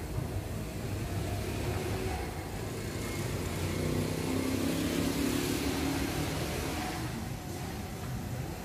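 Motor vehicle engine running, a steady low hum that swells and rises a little in pitch around the middle, then settles.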